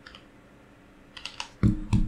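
Keys tapped on a computer keyboard while a short number is typed in: a faint click, a few quick keystrokes about a second in, then two louder, heavier key hits near the end.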